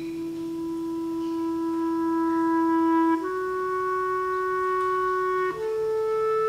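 Clarinet playing a slow melody of long held notes, stepping up in pitch about three seconds in and again near the end. Near the end a harp comes back in with plucked notes.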